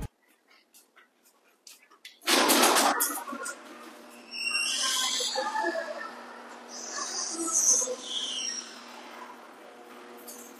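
LiftMaster garage door opener running and driving the sectional steel door down its tracks. The run comes after a loud, sudden burst about two seconds in and carries a steady, noisy rattle with shifting hiss.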